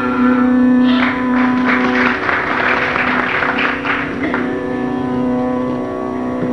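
A steady drone accompanying a Carnatic concert, with a burst of audience clapping that starts about a second in and dies away after about three seconds.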